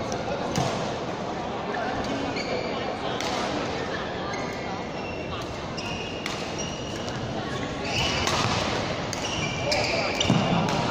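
Badminton rally in a large hall: rackets striking the shuttlecock with sharp cracks and shoes squeaking on the court floor, over a steady background of voices echoing in the hall.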